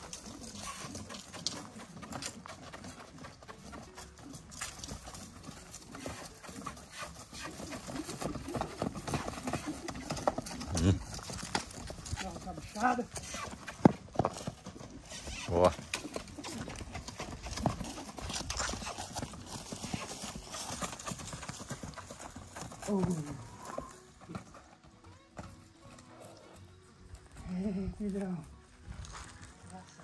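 Hoofbeats of a Mangalarga Marchador stallion cantering around a dry dirt round pen, a quick run of dull strikes that dies away about two-thirds of the way through as the horse slows and stops.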